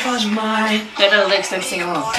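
Young women's voices talking.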